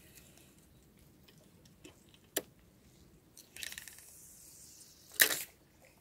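Spinning rod and reel being cast: a sharp click from the reel, then a short hiss as line runs out through the rod guides about three and a half seconds in, and a louder, sharper noise about five seconds in, the loudest sound.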